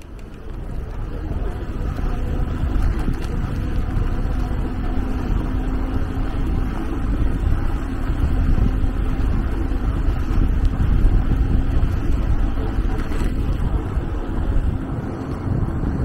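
Wind buffeting the microphone of a handlebar-mounted camera on a moving bicycle: a steady low rumble that comes up within the first second or two as the bike gets going.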